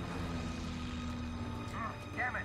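P-51 Mustang fighters' piston engines droning steadily in flight, the pitch sinking slightly as the planes pass.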